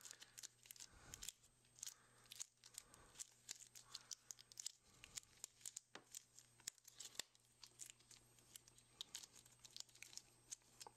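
Faint, irregular crinkling and ticking from gloved hands kneading a lump of two-part epoxy putty to mix it.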